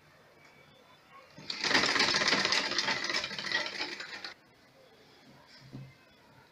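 Sewing machine running at speed for about three seconds, with rapid, even needle strokes as it stitches a seam in satin fabric. It starts about a second and a half in and stops abruptly.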